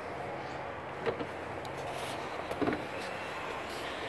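Steady outdoor background noise with a few faint knocks, one about a second in and a couple more past the middle.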